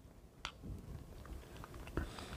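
Faint chewing of a spoonful of mousse and soft sponge base, with a sharp click about half a second in and another near the end.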